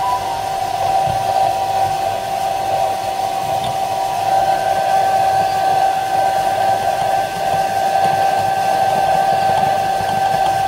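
Hair dryer running steadily, a continuous whir with a constant tone, blowing hot air to heat a phone's glass back cover before prying it off.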